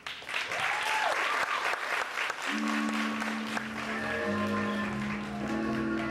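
Audience applauding loudly. About two and a half seconds in, held instrumental chords come in beneath it as the next song's introduction begins, and the clapping thins out.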